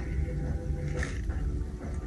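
A steady low rumble with a soft rustle of a paperback picture book's page being turned about a second in.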